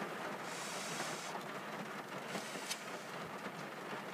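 Steady background hiss, with one short, airy breath-like rush about half a second in as a man eats hot cup noodles with chopsticks. A faint click follows later.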